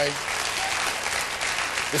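Studio audience applauding, a dense steady clapping that carries on through a pause in the host's monologue.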